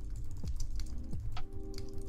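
Computer keyboard typing: a quick, irregular run of key clicks, over soft background music with steady held tones and a low bass.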